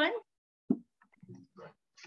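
A single short, sharp click or tap about two-thirds of a second in, followed by a few faint soft sounds, between spoken phrases.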